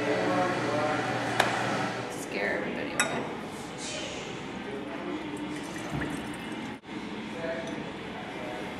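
Liquid being poured from a glass flask into a glass bottle, with two sharp clinks of glassware, about one and a half and three seconds in.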